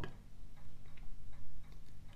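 A few faint short ticks, irregularly spaced, over a low steady hum.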